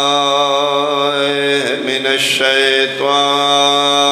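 Congregation chanting salawat in unison over the PA, a long held note that wavers slightly, with a brief break and change of syllable about two seconds in.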